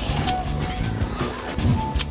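Television show's closing theme music, with a whooshing sound effect that swells near the end.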